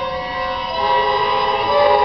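Student string orchestra holding sustained chords in the violins and upper strings, with the low cello part thinned out; the chord shifts once, less than halfway through.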